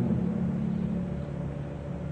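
Steady low hum and hiss of an old 1963 live sermon recording between sentences, with the hall's background noise underneath, easing slightly in level.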